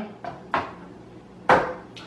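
A graphics card being set down and handled on a hard surface: a light knock, then a louder clack about a second later.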